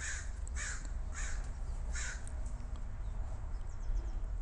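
A bird calling about four times in quick succession, about half a second apart, over the first two seconds, over a steady low hum.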